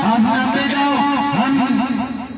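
A man's voice carried loud over a portable loudspeaker, speaking in a raised voice.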